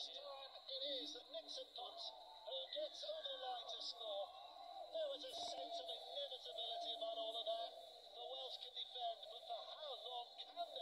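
Match commentary played through a phone's small speaker and picked up by a second phone: a thin, muffled voice with no low end and words that are hard to make out.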